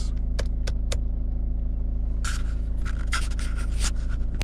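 Car engine idling, a steady low hum heard inside the cabin, with a few sharp clicks in the first second as the lighting ring on the light-switch stalk is turned through its detents, then a scraping rustle from about halfway through.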